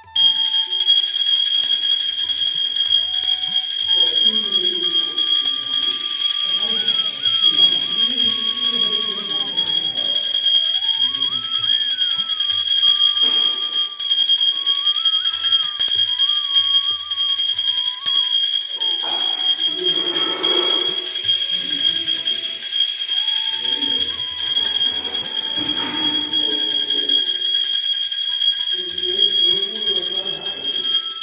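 Temple bells ringing without a break during an aarti lamp offering, a steady high ringing throughout, with voices chanting underneath.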